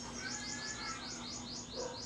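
A small bird calling in a rapid, even series of short, high, falling chirps, about five a second.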